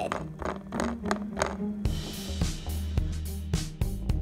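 Background music with a steady drum-kit beat; a deep bass line comes in about halfway through.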